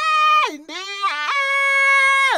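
A solo singing voice, heavily pitch-corrected: each note sits at a dead-flat pitch and snaps abruptly to the next. It steps down twice, then jumps up just over a second in to a long held note.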